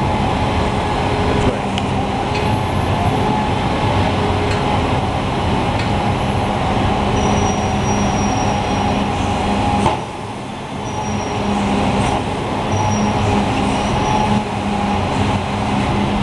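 Packer garbage truck running with its diesel engine and packer hydraulics working steadily under a whine; the sound dips about ten seconds in and then builds again. Short high-pitched squeaks come now and then.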